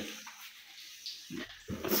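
Bean-cake batter frying in hot oil: a faint, steady sizzle.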